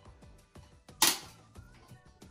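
A single sharp click about a second in as something is snapped open, over faint background music.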